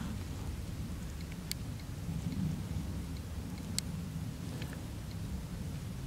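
Low, steady rumble of wind buffeting the microphone outdoors, with two faint sharp clicks about a second and a half in and near four seconds.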